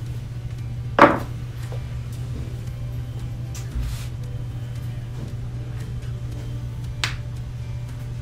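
Small metal jewelry tools clicking: one sharp click about a second in and a lighter one near the end, over steady background music.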